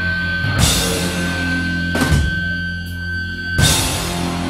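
Metallic hardcore band playing live: held, distorted low chords with a cymbal crash about every one and a half seconds, and a steady high tone running under them until near the end.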